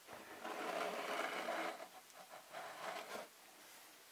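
Plastic toy pieces scraping against each other as they are slid by hand: one longer scrape of about a second and a half, then a few short scrapes near three seconds.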